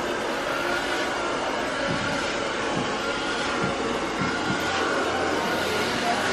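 Steady background noise: an even rumble and hiss with no distinct events.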